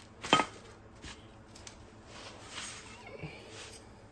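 A metal brake caliper bracket is set down on a paper towel over a hard surface: one sharp knock with a short ring about a third of a second in, then faint handling and rustling sounds.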